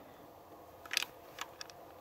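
A few faint, sharp metallic clicks from an Inland M1 carbine's action being handled: a quick cluster about a second in, then two single clicks.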